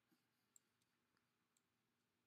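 Near silence, with a faint click about half a second in.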